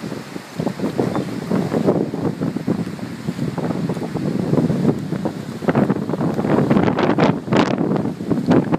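Wind of about fifty miles an hour buffeting the phone's microphone in gusts, over choppy lake water washing against the dock. The gusts grow stronger in the last couple of seconds.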